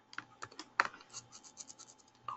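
Computer keyboard keys being typed, a string of light, irregular clicks that come quicker in the second half.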